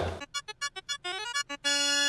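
Short playful musical sting: a quick run of separate, bright notes climbing in pitch, then a held chord that stops abruptly.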